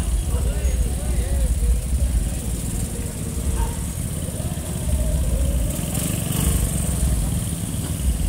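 Many small motor scooters running as a group of them rides past, engines and traffic noise under people's voices.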